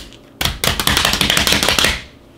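Rapid drumming pats of hands on vacuum-sealed plastic packs of pork chops on a countertop. A quick, even run of sharp taps, about a dozen a second, starts just under half a second in and stops abruptly at the end.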